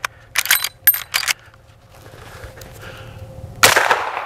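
A suppressed rifle firing one 430-grain round about three and a half seconds in, the loudest sound, with a short ringing tail. Before it come a few sharp metallic clicks from the rifle being handled.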